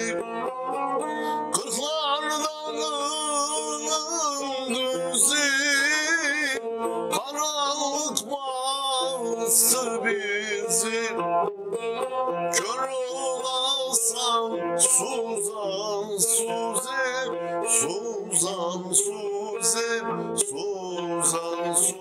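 A man singing a melody with quick wavering ornaments, accompanying himself on a long-necked plucked string instrument that is picked continuously.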